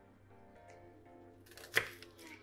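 A kitchen knife slicing through a peeled onion and striking a wooden cutting board once, a sharp knock near the end, over faint background music.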